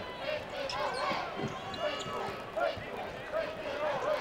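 Basketball arena crowd murmuring during live play, with a basketball being dribbled on the hardwood court and a few knocks around the middle.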